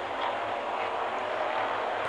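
Steady race-track noise from a stock-car broadcast, heard as an even rushing haze as a smoking car slides to a halt after what the commentators take for a blown motor or tire.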